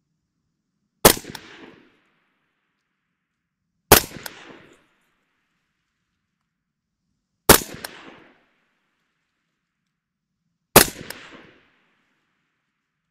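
Four single shots from a suppressed 14.5-inch AR-15 in 5.56 (Surefire FA556-212 suppressor), fired slowly about three seconds apart, each a sharp crack with a short trailing echo.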